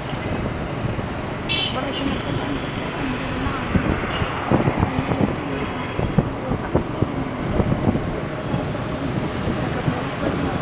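City road traffic heard from a moving vehicle, with wind on the microphone and a short horn toot about one and a half seconds in. Irregular knocks and rattles come through the middle of the stretch.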